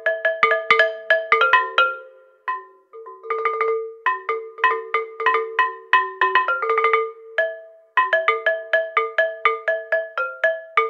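Upturned terracotta flowerpots struck with mallets in quick runs of notes, each pot ringing briefly at its own pitch. There are short pauses about two and a half seconds in and again about seven and a half seconds in.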